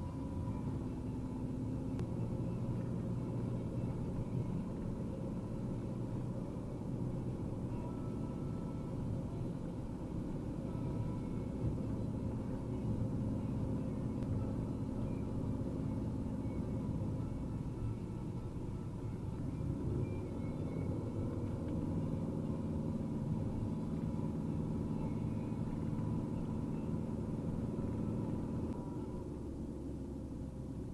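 Fiat Ducato van's 160 hp diesel engine and tyre noise heard from inside the cab while driving steadily at low speed. The engine note shifts partway through.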